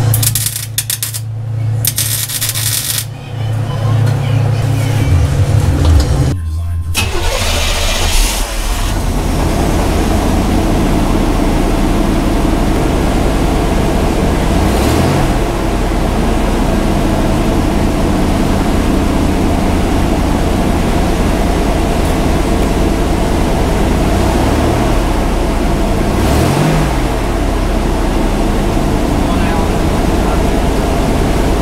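Chevy Silverado 1500's exhaust at the tailpipe, the engine idling steadily, running with a newly installed catalytic converter, with a brief rise and fall in revs about 15 s in and again near 26 s. The first seven seconds hold a louder, choppier stretch of other sound before the steady idle.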